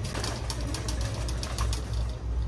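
A steady low rumble with faint scattered clicks and ticks: background noise in the store.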